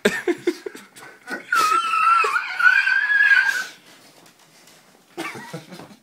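Short bursts of laughter and scuffling, then a high-pitched, wavering squeal lasting about two seconds, the loudest sound here, from one of the men being pinned down in a play fight; it fades to quieter shuffling near the end.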